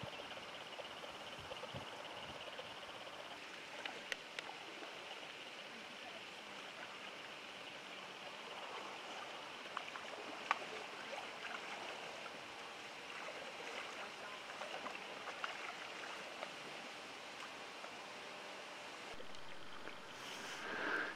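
Faint paddling on a homemade canoe-and-board raft: a steady hiss of water and wind, with a few light knocks of the paddles.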